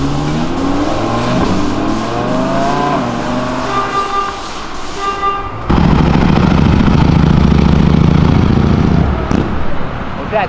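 Audi R8 V10 accelerating away, its engine note rising in pitch, with two short horn toots about four and five seconds in. Then, after a sudden cut, a motorcycle goes by with a loud, deep engine note for about three seconds.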